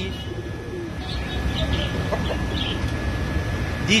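Market ambience: a steady low rumble of traffic with a few faint, short bird calls from the caged birds and poultry around the middle.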